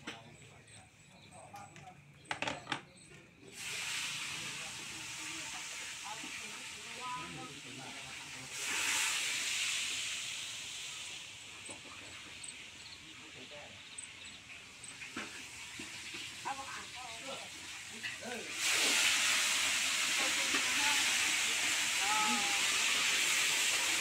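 A steady rushing hiss starts a few seconds in, swells briefly, then grows much louder near the end, with faint voices underneath.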